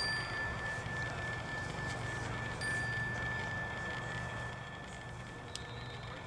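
A meditation bell struck once, its single clear ringing tone sustaining and slowly fading, marking the start of a sitting meditation.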